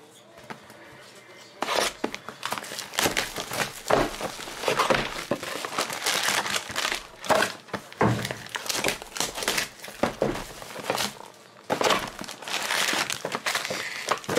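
Plastic shrink wrap being torn off a trading-card box and foil card packs being handled: a dense run of crinkling and crackling that starts about two seconds in.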